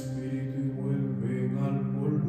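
A group of friars' male voices chanting the Divine Office together on long held notes, the pitch shifting to a new note about two-thirds of a second in, with faint consonant hisses between the held tones.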